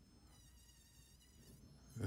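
Faint, high-pitched whine of a handheld rotary tool spinning a small burr against walnut wood. The whine fades in shortly after the start and drops away just before the end.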